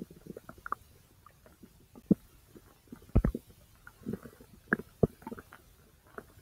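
Bowel sounds from a person's large intestine: short, irregular gurgles and pops, the loudest a deep gurgle about three seconds in.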